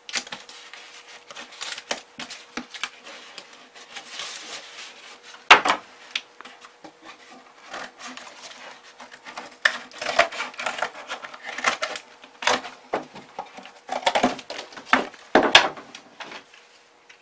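Cardboard and tape being handled and trimmed with a utility knife: irregular taps, scrapes and rustles, busier in the last few seconds. The loudest is a sharp click about five and a half seconds in.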